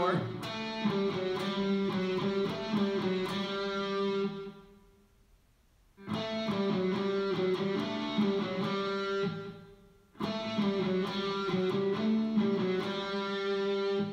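Electric guitar playing a short lick of picked notes that starts on the 7th fret of the D string and walks down. It is played three times, each phrase about four seconds long, with a brief silence between them.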